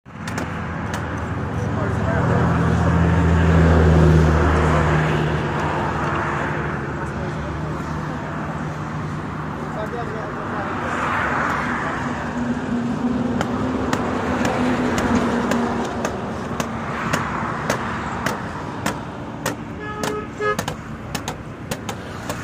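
Highway traffic passing close by: vehicles swell and fade several times, one heavy engine loudest a few seconds in. A run of sharp knocks comes near the end.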